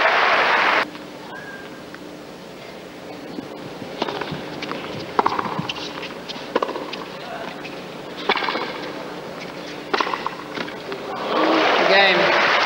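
Crowd applause that cuts off about a second in, then a tennis rally: sharp racket strikes on the ball every second or so. Applause swells again near the end as the point is won.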